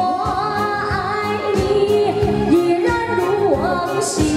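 A woman singing a Mandarin pop ballad through a microphone, holding and sliding between long notes. A live band plays behind her with a steady beat.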